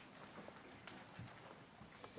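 Faint shuffling and a few scattered knocks and clicks as a choir rises from its seats with hymnals in hand.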